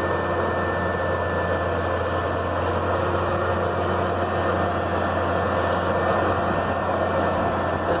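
Massey Ferguson MF 9330 self-propelled sprayer's diesel engine running steadily as the machine crawls over loose stony ground: an even low drone with a thin high whine over it.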